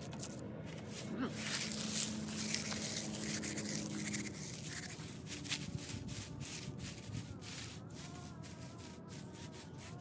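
Dry, crispy fallen leaves being crumpled and crunched by hand into a pile, a continuous rustling crackle full of small snaps.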